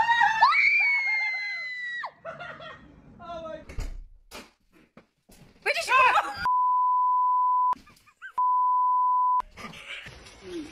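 A high-pitched scream opens, then a man shouts, and two censor bleeps follow. Each bleep is a steady beep of about a second, with a brief word left audible between them, masking swearing.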